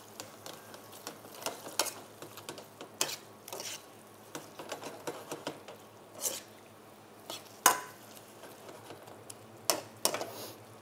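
Metal wok spatula stirring and scraping a beef stir-fry in a wok, with irregular clinks and knocks of metal on metal over a faint sizzle; the sharpest clank comes about three-quarters of the way through.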